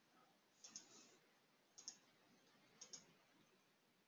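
Near silence broken by three faint computer mouse clicks, each a quick double tick, about a second apart.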